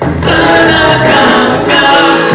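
A man singing a Christian worship song into a handheld microphone, holding long, sustained notes.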